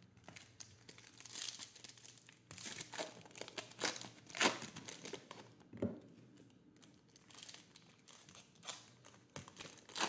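Foil wrappers of Panini Certified trading-card packs crinkling and rustling in short, irregular bursts as the packs and cards are handled and set down on a table, with one sharper tap partway through.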